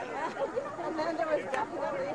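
Crowd chatter: many people talking at once, overlapping voices with no single voice clear.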